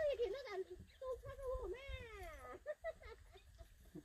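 Short human vocal sounds, then one long call about two seconds in that falls steadily in pitch.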